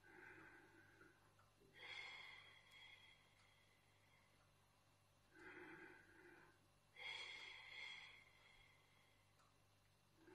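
A man's faint, slow, deliberate paced breathing: two cycles, each a short in-breath through the nose followed by a longer out-breath through the mouth.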